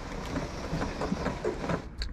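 Chrome manual sunroof crank of a 1990 Volvo 240DL being wound by hand, the sunroof mechanism running with a steady stream of small clicks; the sunroof still works good.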